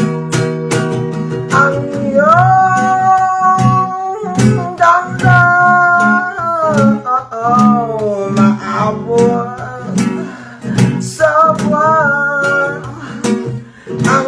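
Acoustic guitar strummed in a reggae-style rhythm, with a man singing over it in long held notes that slide between pitches. The guitar plays alone for the first couple of seconds before the voice comes in, and the singing pauses briefly before the end.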